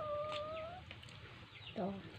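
A faint animal call: one drawn-out note, rising slightly and lasting under a second.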